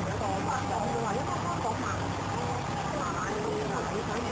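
Indistinct voices talking, not clearly audible, over a steady low hum.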